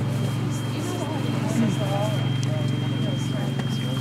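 Steady low engine-like hum with a fine regular pulse, the loudest sound, with faint distant voices talking over it and a thin steady high tone.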